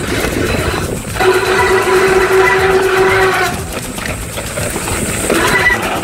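Mountain bike's rear disc brake squealing in a steady howl under tyre and trail noise on a fast dirt descent, a sign that its pads are worn down and it is barely braking. The howl runs from about a second in until about halfway through, and a higher squeal starts near the end.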